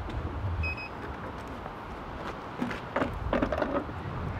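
A Ninebot One electric unicycle being switched off: one short electronic beep less than a second in, over low rumble and handling noise as the wheel is moved and set down.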